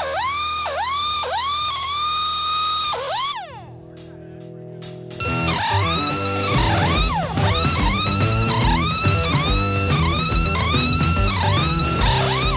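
Pneumatic pit-stop impact wrench whining in short repeated bursts, each rising in pitch and holding, with a spin-down near three seconds in. Background music plays under it and comes in louder with a beat after a brief lull about five seconds in, with the gun's bursts coming quicker.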